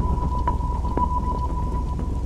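Thunderstorm sound effect under an animated logo sting: a steady low rumble with faint rain patter and a thin, steady high tone held over it.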